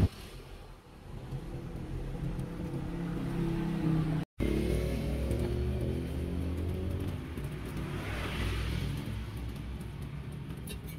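Road traffic: motor vehicle engines running and passing, a steady low rumble that swells near the end. The sound cuts out for a moment a little after four seconds.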